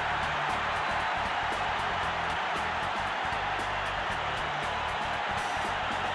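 Ballpark crowd cheering a home run in a steady, dense roar, with music underneath.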